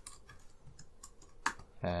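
Computer keyboard keystrokes: a few scattered, sharp key clicks while code is being typed, with a louder click about one and a half seconds in.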